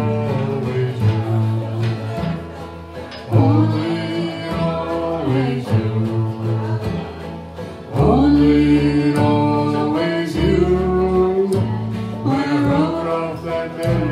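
Live acoustic bluegrass band playing a song: upright bass, five-string banjo, acoustic guitar and squareneck dobro, with singing over them. Melodic phrases slide up into their notes, swelling about three seconds in and again about eight seconds in.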